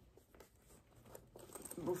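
Faint rustling and a few light clicks from a small fabric bag being squeezed and handled, its contents pressed in so the zipper can be closed around it.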